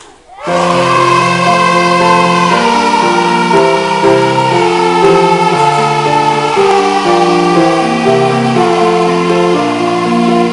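Children's choir singing together with piano accompaniment, starting suddenly about half a second in with steady chords changing note every half second or so.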